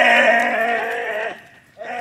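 A voice giving long, drawn-out bleating cries: one held for about a second and a half, then a second starting near the end.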